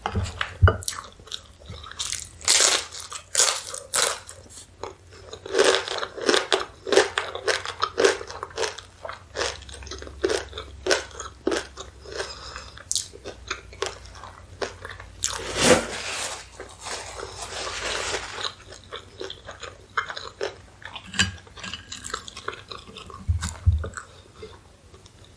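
Corn chips dipped in cheese sauce being bitten and chewed close to the microphone: runs of crisp crunches with chewing in between.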